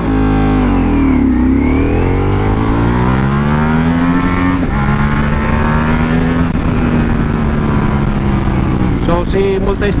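Ducati Multistrada V4 Pikes Peak's V4 engine heard from the rider's seat. The engine note dips and then climbs as the bike accelerates, drops sharply at an upshift into second gear about four and a half seconds in, then holds steady and slowly eases off.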